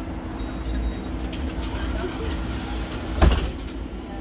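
Interior of a Mercedes-Benz eCitaro G electric articulated bus: a steady low hum under faint passenger voices, with a single loud thump about three seconds in.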